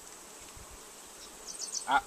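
Honey bees buzzing on a brood frame and around an open hive: a faint, steady hum.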